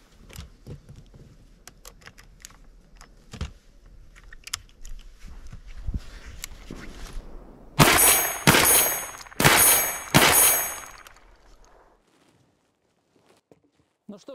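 Light clicks and handling knocks as a red dot sight is clamped onto a shotgun's quick-release Picatinny mount. Then four loud shots from a 12-gauge Fabarm shotgun, fired in about two and a half seconds, each with a short ringing tail.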